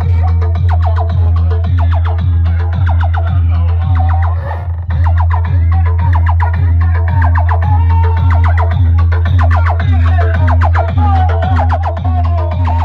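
Very loud dance music with a heavy, continuous bass and a steady, driving beat, played through a truck-mounted stack of horn loudspeakers. The music briefly drops out a little before halfway, then comes back in.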